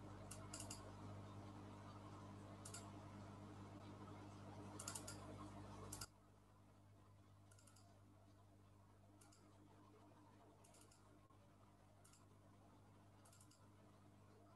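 Faint clicking of a computer mouse, about ten clicks spread out, some in quick pairs like double-clicks, over a low steady hum. The background hiss drops suddenly about six seconds in.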